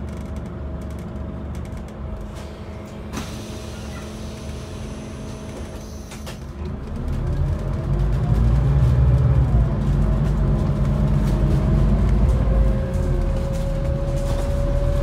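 Scania N280UD compressed-biogas bus heard from the upper deck: the engine idles steadily, with a brief sharp air noise about three seconds in. About halfway through it pulls away and accelerates, the engine note growing louder and shifting in pitch, with a rising drivetrain whine near the end.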